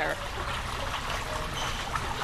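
Steady outdoor background of trickling water, an even hiss with a low rumble underneath.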